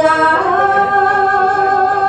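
A woman singing Khmer smot, the unaccompanied Buddhist chanted lament, solo. She holds one long melismatic note that steps up in pitch about half a second in and is then held with a slight waver.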